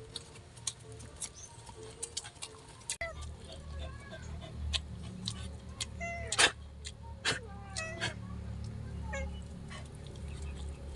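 Close mouth sounds of eating with the hands: sharp clicks and smacks of chewing. From about three seconds in, a cat meows several times in short rising-and-falling calls, over a low rumble that starts at the same moment.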